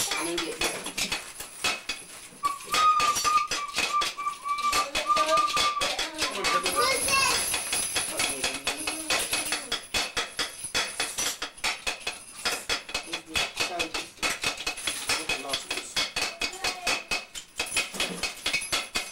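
Indistinct voices of children and adults talking in a small room, with frequent crackling handling noise. A steady high tone is held for about three seconds a few seconds in.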